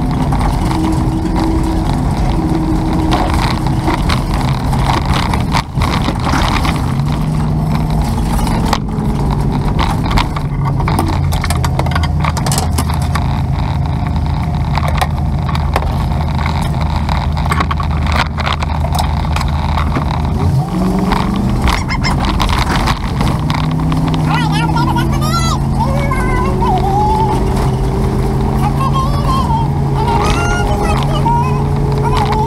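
Engine and road noise of a moving vehicle, heard from the vehicle itself. The engine's pitch holds steady for stretches and shifts as the speed changes, dropping about twenty seconds in and climbing again a few seconds later.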